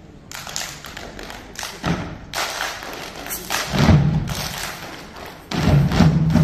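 A run of heavy thumps and sharp percussive hits during a stage dance routine. A short hush comes first, and the loudest thumps land about four seconds in and near the end.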